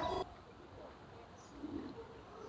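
Faint outdoor ambience with small, scattered bird calls. A louder sound at the start breaks off abruptly at an edit about a quarter second in.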